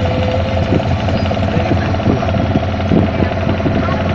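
A boat's engine running steadily and loud, with a low hum and a fast, even knock.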